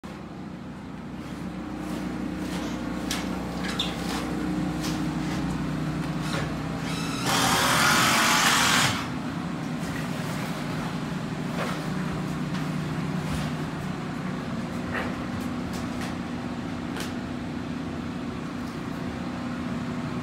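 A steady low motor hum with scattered light clicks and knocks. About seven seconds in there is a loud hiss lasting about a second and a half.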